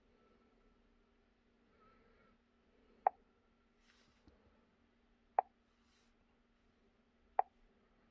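Three short, sharp pitched ticks from the scan tablet's touch or interface feedback, about two seconds apart, over a faint steady hum.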